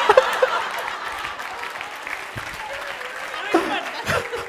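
Theatre audience laughing and applauding at a joke, loudest at first and slowly dying down, with scattered voices in the crowd.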